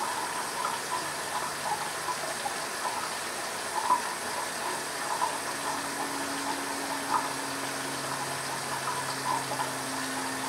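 Safety razor scraping through two or three days' stubble on the chin in short, irregular strokes, over a steady rushing hiss. A low steady hum comes in about halfway through.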